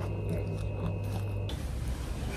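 Toast being bitten and chewed, with short crisp crunches over a steady electrical hum; the crunching and hum cut off about one and a half seconds in.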